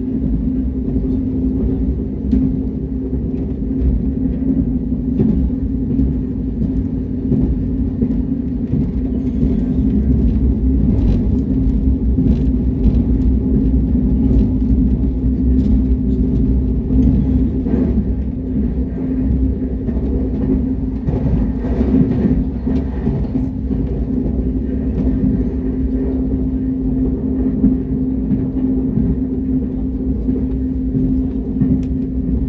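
Cabin noise of a KTX high-speed train under way: a steady rumble with a constant low hum running through it.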